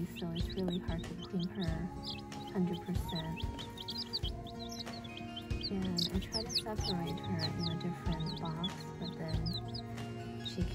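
Baby chicks peeping over and over in short, high chirps, over background music with long held notes.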